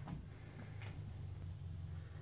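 A faint, steady low machine hum with a few faint ticks.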